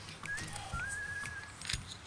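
A bird whistling a few short, nearly level notes, the longest in the middle. Near the end come light clinks of flint pieces being handled.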